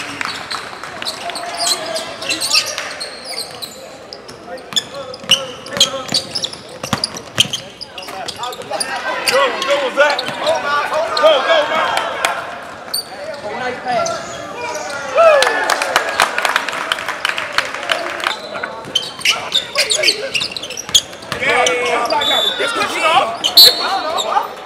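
Basketball dribbled and bouncing on a hardwood gym floor in sharp repeated thuds, with indistinct voices of players and spectators calling out, all echoing in the large gym.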